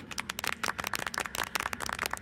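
A rapid, irregular run of sharp clicks, like a crackling rattle.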